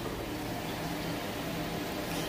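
Steady background hiss with a faint low hum, unbroken and without distinct events.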